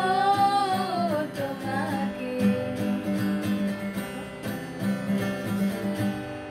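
Acoustic guitar strummed steadily under singing: a long held sung note bends downward over the first second and a half, and a shorter held note comes about two seconds in, after which the guitar carries on alone.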